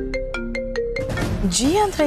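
Smartphone ringtone of an incoming call: a short mallet-like melody of held notes over a quick ticking beat, repeating.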